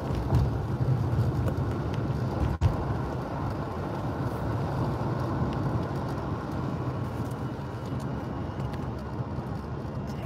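Steady low road and engine rumble heard from inside a moving car's cabin, with one short click about two and a half seconds in.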